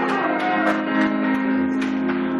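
Music accompanying the performance: several long, ringing notes held together, with a short gliding tone near the start.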